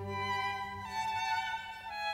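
Background music: a violin playing long, held bowed notes over a low sustained string part, moving to a new note about a second in and again near the end.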